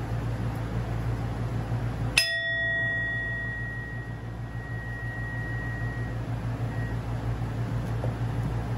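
A hand-held metal singing bowl struck once about two seconds in, ringing with several tones; the lowest and highest fade within a second or so, while one clear tone rings on and dies away over about four seconds.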